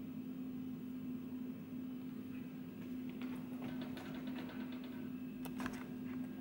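A steady low hum, with faint clicks and rustles from about halfway in as a stack of books is handled and lowered.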